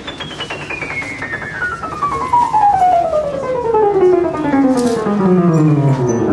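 Vintage Emerson upright piano played in a fast run descending from the top of the keyboard down into the bass, getting louder as it goes lower. The tone is mellow and each note in the run sounds.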